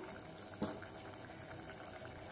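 Faint, steady simmering of a pot of keerai sambar cooking on the stove, with one soft tap about half a second in.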